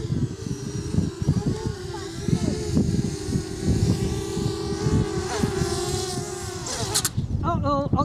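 Small Eachine Blade FPV racing quadcopter's motors and propellers whining steadily with slight wobbles in pitch as it flies. The whine cuts off about seven seconds in as the quad comes down on the tarmac.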